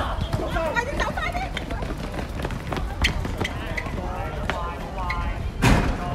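High-pitched voices calling out across an outdoor basketball court during play, over scattered sharp ball bounces and footsteps. A single loud thump comes near the end.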